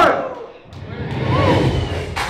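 A live rap track cuts off at the start, leaving the noise of a bar crowd between songs: a murmur of voices over a low rumble, with one voice calling out about halfway through.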